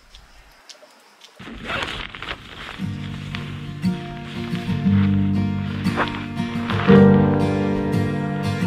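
A short laugh about two seconds in, then background music with acoustic guitar fades in and grows louder.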